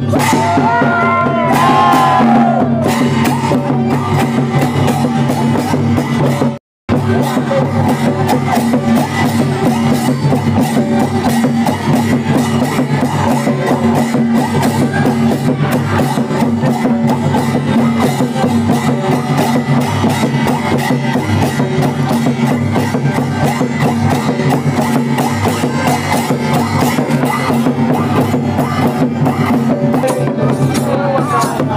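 Folk dance music driven by fast, dense drumming over a steady low drone, with a singing voice in the first couple of seconds. The sound cuts out completely for a fraction of a second about seven seconds in.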